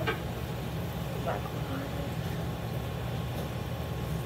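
Steady low background hum.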